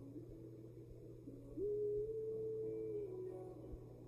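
Soft, slow background music of long held notes that step from one pitch to another, with a higher note held for about a second and a half in the middle.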